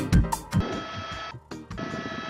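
Background music with a drum beat. About half a second in, the beat gives way to a sustained buzzy chord, which breaks off briefly near the middle and then resumes.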